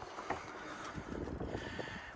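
Quiet outdoor background noise with faint wind on the microphone and a few light ticks.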